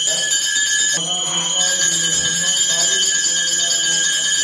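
Temple bells ringing continuously in a steady high jangle, with faint voices underneath.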